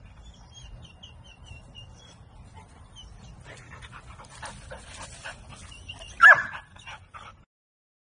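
Golden retriever whimpering and yipping, with one loud bark a little past six seconds in; the sound cuts off suddenly near the end.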